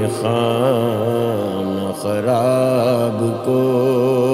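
A man's voice singing drawn-out, ornamented notes of an Urdu devotional kalam, the pitch wavering on each held note. A new phrase starts about two seconds in.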